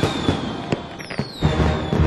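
Fireworks going off: several sharp cracks and low booms with falling whistles, one whistle starting about a second in, the whole dying down toward the end.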